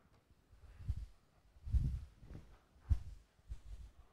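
Wet sponge wiping a chalkboard: a run of soft, low rubbing knocks, five or six strokes in about four seconds.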